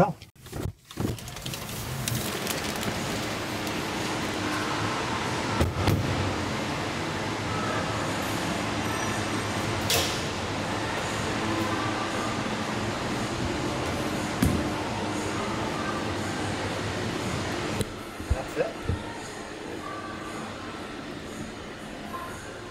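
Steady rushing background noise of an underground car park, with a few knocks and clicks as the Supercharger cable and connector are handled. A cluster of clicks comes near the end, as the connector goes into the charge port, and the noise then turns quieter.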